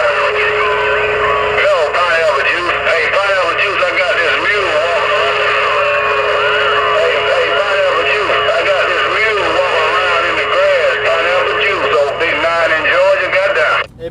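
Uniden HR2510 10-meter radio receiving a strong long-distance signal: several voices talking over one another through its speaker, too garbled to make out, with a steady whistle from another carrier through the first half. It cuts off at the end, when the operator keys up to transmit.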